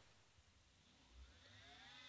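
Brushless scooter hub motor on a Lebowski controller starting from rest about a second in: a faint whine that rises in pitch as it spins up, then levels off.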